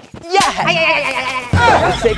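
A long, loud, quavering vocal cry, its pitch wavering throughout, with a second louder cry and a low rumble under it near the end.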